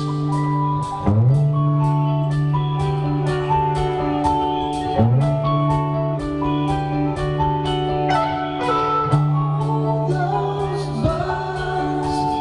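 Live rock band playing over a PA, recorded from the crowd: bass notes that slide up into each new note every few seconds, a steady drum beat and bright melodic lines. A voice comes in near the end.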